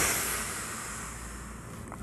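A man's long breath out through pursed lips, releasing a deeply held breath. It is strongest at the start and fades away over about a second and a half.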